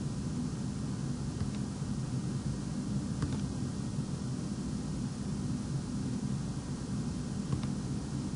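Steady low hum of room and microphone background noise, with a few faint clicks of a computer mouse.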